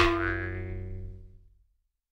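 An editing sound effect for a title card: a single struck, ringing musical tone with many overtones, starting sharply and fading out over about a second and a half.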